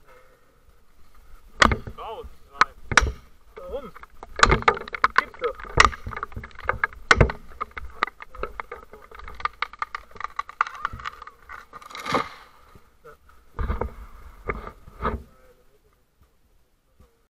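Irregular sharp knocks and clatter with rustling through dry brush and twigs, from felling gear such as wedges being gathered up on the ground.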